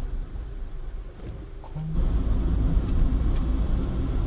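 Car engine and road rumble heard from inside the cabin while driving: a steady low drone, quieter at first, then stepping up abruptly about two seconds in, with a faint steady engine hum.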